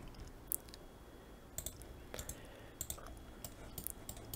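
Faint computer mouse clicks, about eight in all, some coming in quick pairs, as copies of a block are placed in a CAD program.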